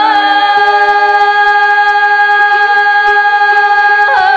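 Đàn nhị (Vietnamese two-string bowed fiddle) holding one long, steady bowed note, which slides down at the very end, over a softer string accompaniment.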